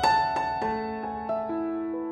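Background piano music: a chord struck at the start, then single notes ringing out and fading one after another.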